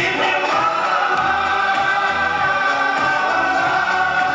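Live song with choir and orchestra; the voices take one long held note that starts about half a second in.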